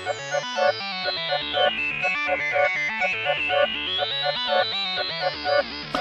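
Electronic background music: stepping synthesizer notes over a bass line, with a bright high sweep that glides down and then back up.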